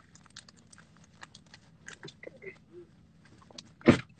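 Faint scattered clicks and rustling, with one sharp, loud knock just before the end.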